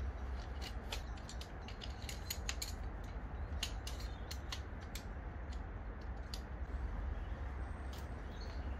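Shock-corded poles of a collapsible camp chair clicking and rattling as they are unfolded and slotted into the frame's hub: a quick run of sharp clicks for several seconds, thinning out near the end, over a steady low rumble.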